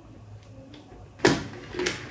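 A plastic three-pin power adapter being pushed into a wall socket: two short clicks about a second and a half in, the first the louder.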